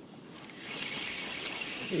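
Spinning reel being cranked steadily, its gears whirring, as a hooked perch is reeled in. It starts about half a second in, after a couple of light clicks.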